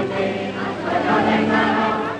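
Music with a group of voices singing together, like a choir, held at a steady level.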